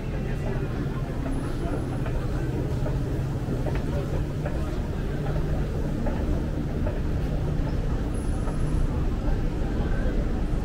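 Indoor shopping-mall ambience: a steady low hum under the indistinct voices of passing shoppers.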